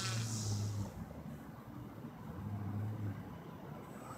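Motor and propeller of a radio-controlled Beaver floatplane model taxiing on the water. It is throttled in two short bursts: the first stops about a second in and the second comes at about two and a half seconds. A brief hiss sounds at the start. The bursts of power go with attempts at a left turn that the weak water rudder cannot manage.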